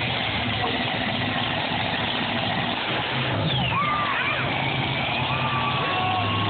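Monster truck engines running at the start line, the pitch stepping up about halfway as a second truck rolls in alongside. Crowd noise throughout, with scattered high yells from about halfway on.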